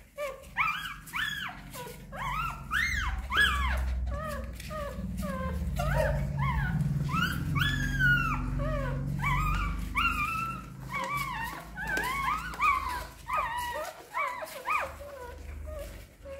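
A litter of hungry newborn puppies crying, a constant overlapping chorus of short high squeaks and whimpers that rise and fall in pitch. A low rumble sits underneath through the first half or so.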